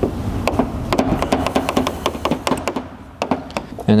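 Irregular light clicks and taps of hands stretching and pressing wet PPF tint film over a plastic headlight lens, over a steady low hum.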